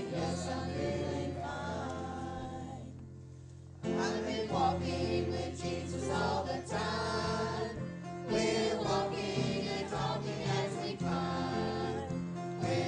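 Many voices singing a hymn together over low, sustained accompanying notes, with a short break between lines about three seconds in.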